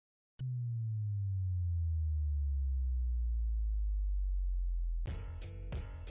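A sharp hit, then a deep bass tone sliding slowly downward for about four and a half seconds: a sub-bass drop sound effect for a logo animation. About five seconds in, music with sharp rhythmic hits cuts in.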